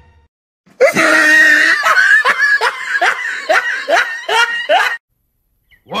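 A loud, shrill cackling laugh: a run of about nine 'ha' bursts, each rising and falling in pitch. It starts about a second in and breaks off sharply near the end.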